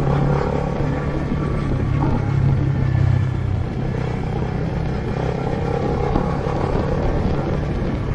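Small motorcycle's engine running steadily while riding, heard from the rider's camera with road and wind noise.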